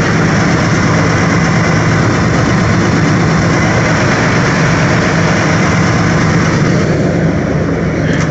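Ford 302 (5.0 L small-block V8) in a 1994 F-150 idling steadily just after a cold start in deep cold (about minus 18), heard close to the open engine bay.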